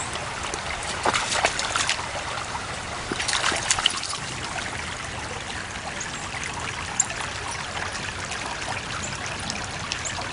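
Shallow creek trickling steadily over stones. Short bursts of splashing come about a second in and again about three and a half seconds in, with a single sharp tap near seven seconds.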